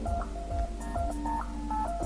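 Background music: a slow, sparse melody of plain, beep-like electronic tones.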